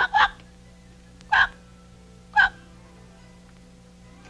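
A person hiccupping: a quick pair of short hiccups, then two more about a second apart.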